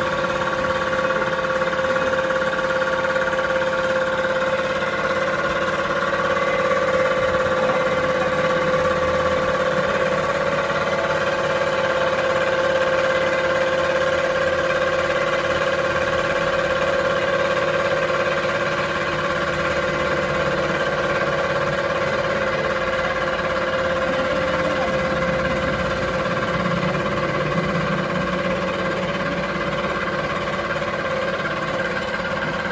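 Fiber opening machine for pillow filling running steadily: a continuous motor hum with a steady mid-pitched whine that holds unchanged throughout.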